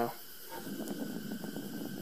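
Homemade natural gas ribbon burner, a slotted stainless steel tube under a wire mesh screen, burning with a steady, even flame noise.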